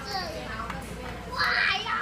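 A young child's high voice speaking and calling out, loudest about one and a half seconds in.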